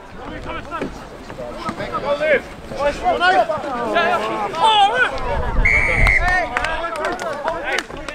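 Several voices shouting and calling across a rugby field, with one short, steady referee's whistle blast about five and a half seconds in, stopping play.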